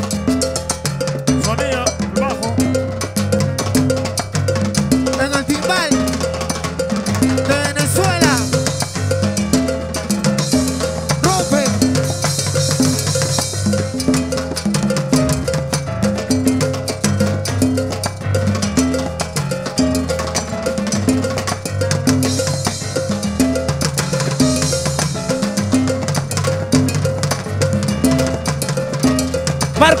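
Live salsa orchestra playing an instrumental intro, with piano, congas and a horn section over a steady rhythm.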